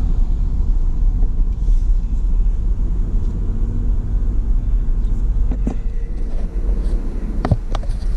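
Jeep driving on a paved road, heard from inside the cabin: a steady low rumble of engine and tyre noise, with a couple of short clicks late on.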